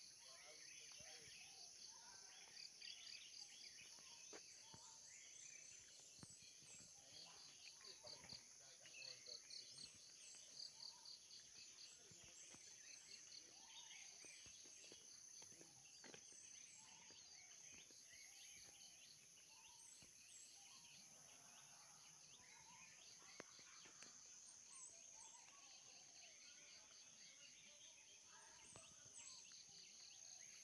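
Faint outdoor insect chorus: a steady high buzz with a rapidly pulsing chirp running under it, and occasional short bird chirps.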